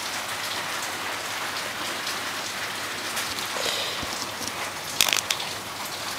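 Steady rain hiss, broken about five seconds in by a brief crackle as an arc from an arc welder strikes through a pencil's graphite lead.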